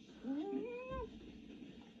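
A cat meowing once: one drawn-out call that rises in pitch and dips briefly at the end, with a soft thump at the same moment.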